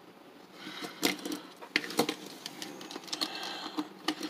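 Small plastic Transformers Frenzy toy in tank mode rolling on a wooden tabletop, a light rattle and scrape broken by several sharp plastic clicks, starting about half a second in.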